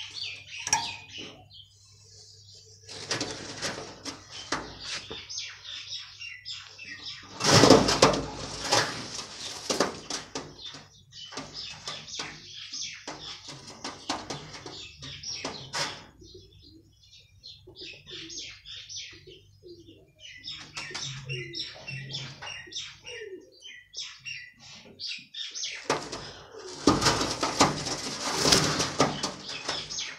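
Hana pouter pigeons flapping and clattering their wings in repeated bursts, loudest twice: about eight seconds in and again near the end.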